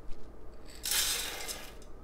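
Soy wax pellets poured from a glass bowl into a stainless steel pouring pot, a rush of pellets on metal lasting about a second, starting just under a second in.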